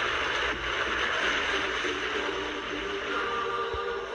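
Documentary soundtrack music over a steady rushing noise, with sung choral voices coming in near the end.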